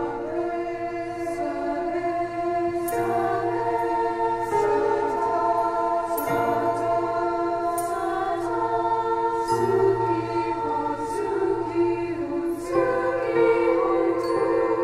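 Choir singing slow, sustained chords, the harmony shifting every second or two, with short soft hissing consonants between the held notes.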